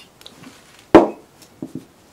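A single dull thump about a second in as a pistol part is set down on a cloth-covered surface, followed by a few light clicks of parts being handled.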